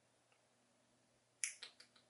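Near silence, then a few short, sharp clicks in quick succession near the end.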